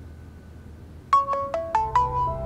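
A mobile phone ringtone: a short marimba-like melody of quick notes, about five a second, that starts about a second in over faint room tone. It is the sound of an incoming call ringing.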